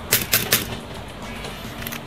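A quick run of about four light taps on a Commodore Amiga A500 keyboard in the first half second, plastic clicking on plastic. He is tapping the keyboard to reproduce an intermittent fault that he takes for a bad connection, one that makes the Caps Lock LED flash.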